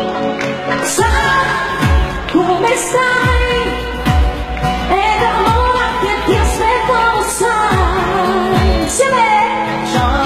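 A woman sings a Neapolitan neomelodic pop song live into a microphone, her voice sliding and ornamenting between notes, over a band accompaniment with a regular bass-drum beat.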